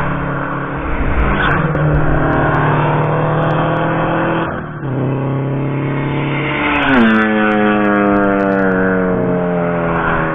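Track cars accelerating hard toward and past the trackside microphone. The engine note climbs, dips briefly at a gear change about halfway, climbs again, then drops sharply in pitch with a falling tone as a car goes by close.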